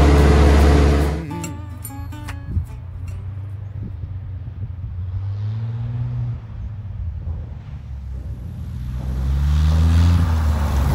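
A song ends about a second in. Then the piston engine of a single-engine taildragger light airplane rises in pitch and grows louder as it powers up along a grass airstrip.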